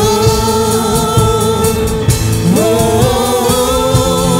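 Women's praise-and-worship team singing a gospel song together into microphones over instrumental backing, in long held notes that step up in pitch about halfway through.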